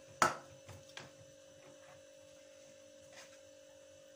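A sharp metal clank of cookware about a quarter second in, then a few light taps and scrapes of a spoon stirring sauce in a frying pan, over a steady electrical hum.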